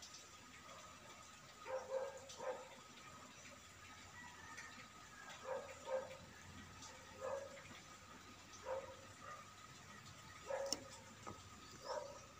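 Puppy giving short, faint yelps, about nine of them spread through the stretch, some coming in quick pairs.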